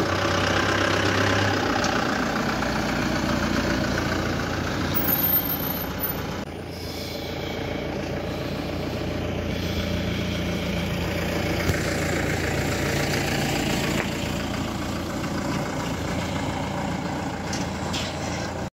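Engine of an armoured security-force jeep idling steadily, with a brief dip in level about six seconds in.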